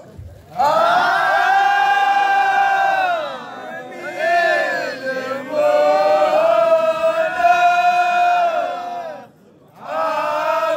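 A group of men chanting a devotional Moulidi (Mawlid) chant together, holding long sustained notes in a few phrases. There is a brief pause near the end before the next phrase begins.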